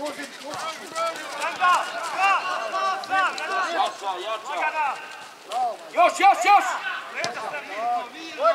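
Several men shouting across a football pitch, overlapping calls and short yells, with a loud cluster of three quick shouts about six seconds in.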